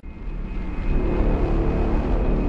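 A rumbling rush of noise with no clear pitch, the kind of whoosh used as a transition sound effect. It swells up from silence over about half a second and then holds steady.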